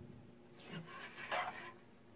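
Mostly quiet room with faint handling noise from hands on the guitar's string and bridge pin, including a soft brief rub about a second and a half in.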